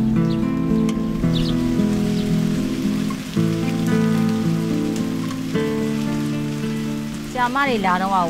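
Rain falling and dripping from eaves, under soft background music of sustained chords that change every two seconds or so. A man's voice begins near the end.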